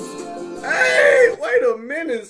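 A country song plays quietly with a sung melody. About halfway in, a man's voice breaks in with a loud, high-pitched exclamation and goes on vocalising over it.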